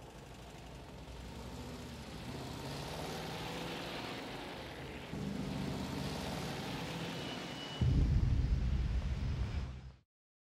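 A deep rumble that builds in steps, jumping louder about five seconds in and again, much louder, near the end, then cutting off abruptly. A brief thin high tone sounds shortly before the last jump.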